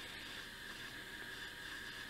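Faint, steady background hiss of room tone; no distinct sound stands out.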